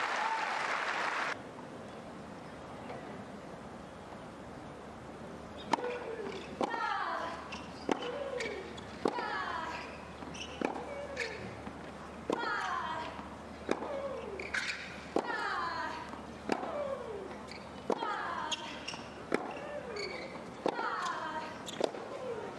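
Crowd applause that stops about a second in. After a pause a tennis rally begins: about a dozen racket strikes on the ball, one every second or so, each followed by a player's grunt that falls in pitch.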